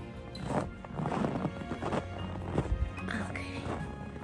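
Footsteps in snow, about two steps a second, with background music.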